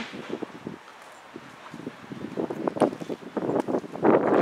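Wind noise on the microphone with a quick run of irregular light knocks and rustles, busier in the second half.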